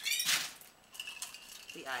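Ice in a stainless cocktail shaker and a martini glass: a short rattle at the start, then a few light clinks.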